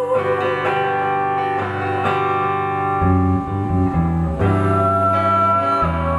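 Progressive rock band playing an instrumental passage live: electric guitar and keyboards hold sustained melody notes, and the bass comes back in about halfway through.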